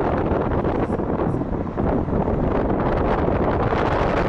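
Wind buffeting the microphone through an open car window at speed, over steady road and engine noise.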